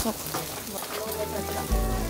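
Meat sizzling on a barbecue grill, a steady hiss, under background music whose held notes come in about a second in, with a deep bass note joining near the end.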